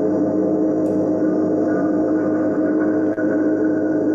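Live electronic drone music: a dense, steady, sustained chord of many held tones with no rhythm or melody, unchanging throughout.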